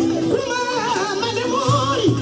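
Music with singing: a voice sings a wavering, ornamented melody over a continuous accompaniment.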